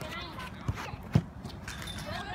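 Two dull thuds of a soccer ball being kicked on artificial turf, the second, about a second in, much louder, like a shot on goal, with children's voices calling in the background.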